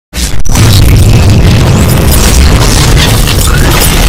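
Cinematic logo-intro sound effects: a loud, sustained deep boom and rumble with crackling hits over it, starting abruptly just after the opening moment.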